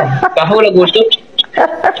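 A person's voice making short wordless vocal sounds, ending in a laugh.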